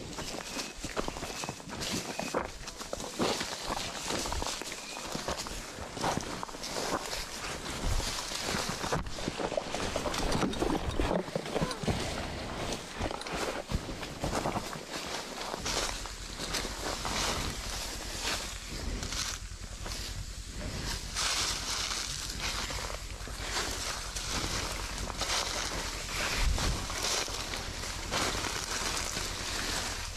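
Several people walking through dry fallen leaves and undergrowth, with leaf litter crunching underfoot and brush rustling in an irregular crackle. About halfway through, a steady low rumble joins in.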